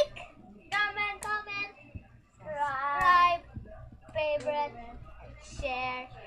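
A boy singing in four short phrases, the longest a held note about halfway through.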